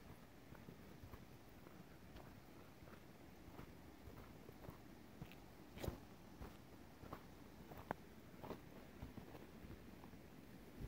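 Faint footsteps crunching in snow, a soft crunch every half-second to a second, with one louder step about six seconds in.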